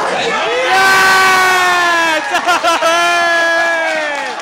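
A supporter close to the microphone shouting in celebration of a goal: one long held shout, a run of short cries, then a second long shout, with a small crowd cheering.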